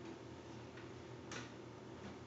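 Quiet pause with low room tone and a faint short hiss, such as a breath, about a second and a half in.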